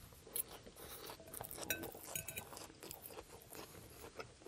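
A person chewing a mouthful of barbecue ranch chicken salad with crisp lettuce, close to the microphone: faint, irregular small crunches and clicks.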